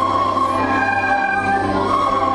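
A group of children playing recorders in unison, a slow Christmas carol melody of long held notes that changes pitch a couple of times.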